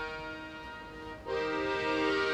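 Accordion-led live music: a held chord fades away, and a new chord comes in sharply about a second and a quarter in.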